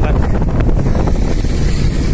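Strong wind buffeting the microphone on a moving bicycle, a loud steady low rumble, with traffic from the adjacent road mixed in.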